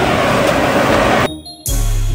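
Steady rushing noise of the airblown inflatables' blower fans. It cuts out just over a second in, and after a brief quiet, background music with a deep, steady bass begins.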